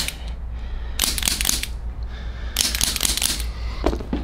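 Handheld chiropractic adjusting instrument worked on the midfoot bones: two crackly, rattling bursts, each about half a second long, the second about a second and a half after the first.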